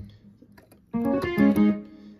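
Music from a Yamaha CK61 stage keyboard cuts off at the start; after a short pause, a brief phrase of a few stepped notes plays for about a second.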